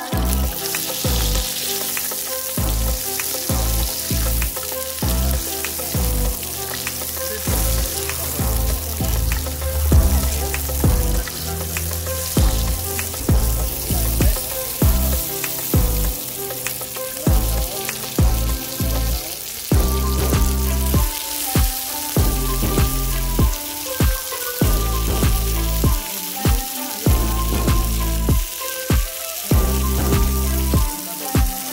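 Bell pepper strips and shiitake mushrooms sizzling in hot oil in a wok, with the mushrooms being added to the pan. A steady hiss runs throughout, broken by many short knocks and crackles.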